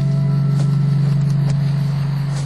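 A sustained low music chord holding and slowly fading, with an approaching car's engine and tyre noise rising underneath it.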